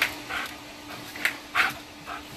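A wet, excited Belgian Malinois giving four short, high-pitched yelps in two quick pairs.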